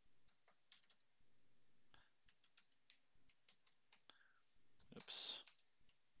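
Faint clicking of a computer keyboard as commands are typed, irregular single keystrokes with short pauses. A brief, louder rush of noise comes about five seconds in.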